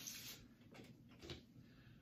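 Near silence with a faint paper rustle: a vinyl LP being slid out of its paper inner sleeve, with a couple of soft brushing strokes a second or so in.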